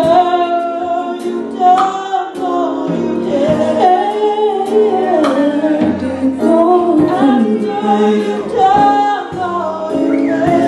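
Gospel song sung by a woman into a handheld microphone, with long held notes over a steady instrumental accompaniment.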